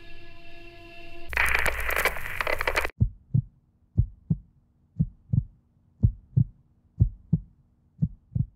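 A held music chord gives way about a second in to a loud hiss of noise with a falling sweep, which cuts off sharply. A heartbeat sound effect follows: low double thumps about once a second over a faint steady hum.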